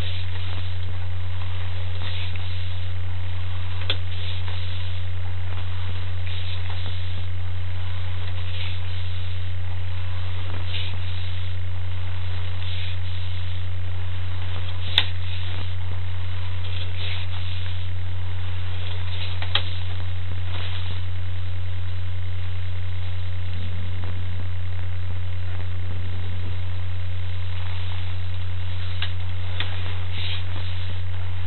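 Steady low electrical hum on a sewer inspection camera's recording, with faint scattered crackles and two sharper clicks about halfway through.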